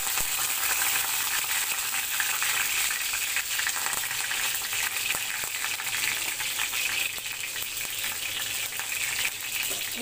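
Black mustard seeds and curry leaves sizzling in hot oil in a kadai, a steady hiss with many small crackling pops: the spices being tempered at the start of cooking.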